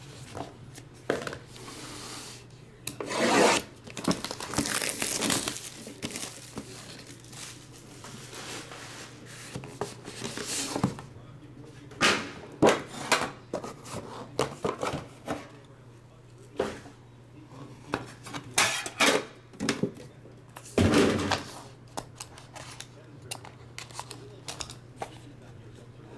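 A sealed trading-card box being unwrapped and opened by hand: plastic wrap tearing and crinkling, cardboard and a metal tin being handled, and a small blade cutting at the pack, heard as a string of short rustling bursts and clicks.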